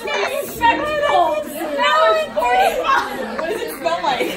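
Overlapping voices and chatter of a crowded hall, with a woman laughing.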